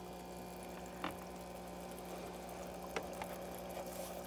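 Small aquarium filter running in a fry container: a steady trickle of water over a low hum, with two faint clicks, about a second in and near three seconds.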